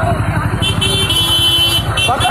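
Many motorcycle engines running together in a slow, dense procession, with a horn held for about a second in the middle.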